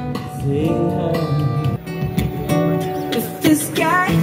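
A man singing to his own acoustic guitar accompaniment, with a rising vocal run near the end.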